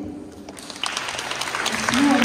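Audience applauding, breaking out suddenly about a second in.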